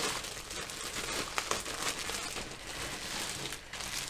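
Thin plastic bag crinkling and rustling in irregular crackles as a bagged plastic model-kit sprue is picked up and handled.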